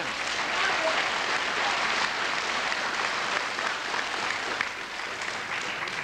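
Audience applauding: dense, even clapping from a large crowd that eases off slightly near the end.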